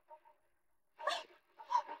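A woman sobbing and whimpering, with two short gasping sobs, one about halfway through and one near the end.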